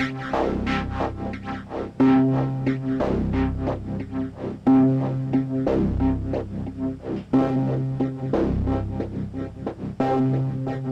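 Erica Synths Bassline DB-01 synth playing a repeating sequenced bass pattern through a Strymon Timeline delay pedal, short notes echoing away, with a long held low note returning about every two and a half to three seconds.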